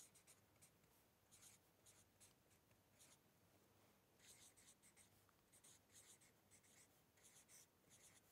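Faint scratching of a felt-tip marker writing on paper, in quick short strokes: one run of writing, a pause of about a second, then a second run.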